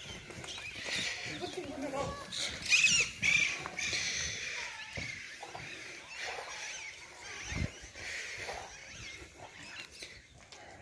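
Indistinct voices with animal calls mixed in, loudest about three seconds in.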